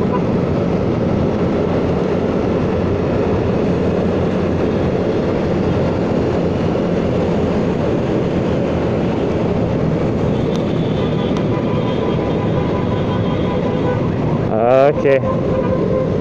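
Steady riding noise from a scooter cruising at about 45–50 km/h: the engine running evenly under a constant rush of wind and road noise.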